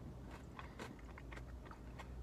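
Faint chewing of a chocolate-covered wafer bar, with a few soft crunches and mouth clicks over a low steady hum.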